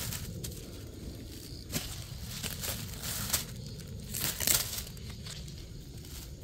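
Black plastic mulch film and corn leaves crinkling and rustling under a hand working at the base of a sweet corn plant to strip off its suckers: a string of short, irregular crackles.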